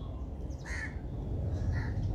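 Two short, harsh bird calls about a second apart, over a low steady background rumble.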